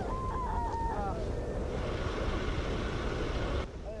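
A woman's high, wavering cry for about the first second, then a steady low rumble and hiss.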